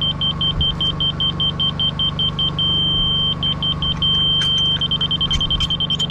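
Laser level receiver beeping as it is moved through the beam: a high electronic beep pulsing about five times a second, twice turning briefly into a steady tone, then holding a steady tone near the end. The steady tone is the receiver's signal that it is on the laser's level line. A steady low hum runs underneath, with a few light knocks near the end.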